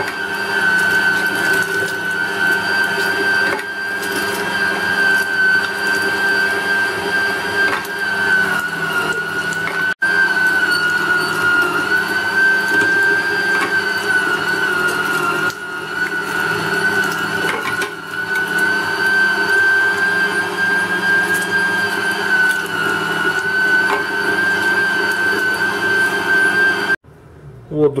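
Zelmer ZMM1294SRU electric meat grinder running, grinding thawed pork and chicken: a steady motor whine that dips slightly in pitch now and then. The motor cuts off abruptly near the end.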